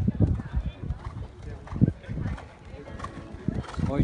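A horse's hooves thudding on the sand footing of a dressage arena, a run of dull hoofbeats.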